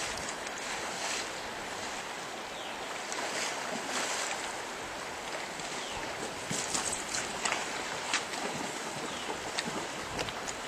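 Fast river current rushing steadily over a gravel bed, with water splashing around a person wading and a landing net; short sharp splashes come more often in the second half.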